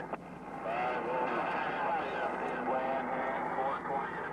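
President HR2510 radio's speaker giving out static hiss, with a weak, distant voice of the far station barely coming through the noise.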